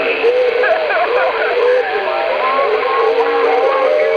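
Single-sideband voice from a shortwave amateur radio station, coming out of a homebrew direct conversion phasing receiver. The speech is thin and band-limited, with wavering, somewhat garbled pitch, as typical of off-tune SSB reception.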